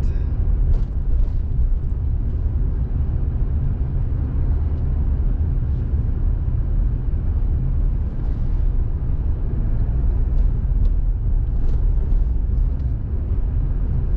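Steady low rumble of a car's engine and tyres while driving, heard from inside the car, with a few faint light clicks.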